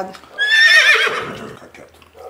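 A dog whining: one high, wavering whine that slides downward, lasting about a second.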